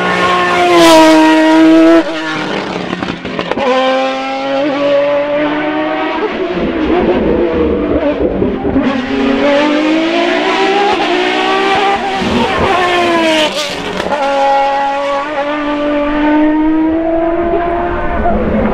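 Sports prototype race car engine revving hard on a hill climb. Its note climbs under throttle and drops at gear changes and lifts for the bends, and breaks off abruptly about two seconds in before another run.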